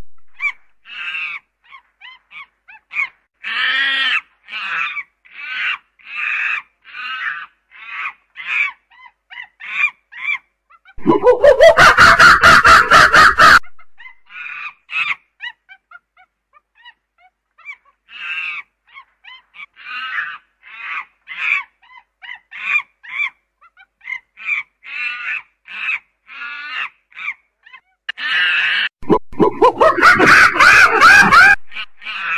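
Primate calls: a run of short, high calls at about two a second. The run is broken by a loud scream of a few seconds about eleven seconds in, and another loud scream starts near the end.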